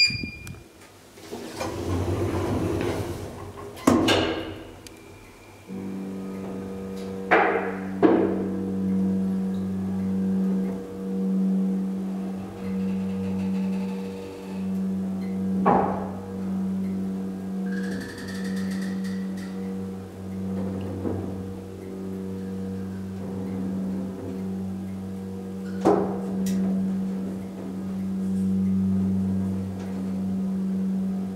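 KONE hydraulic elevator: a short beep as the car button is pressed, a few seconds of rattle and knocks, then about six seconds in the hydraulic pump motor starts with a steady low hum that carries on as the car rises, broken by occasional knocks.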